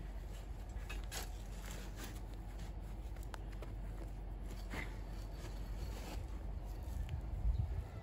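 A spade being driven into garden soil and lifting out earth, heard as a few faint scrapes and crunches at irregular intervals over a low steady rumble.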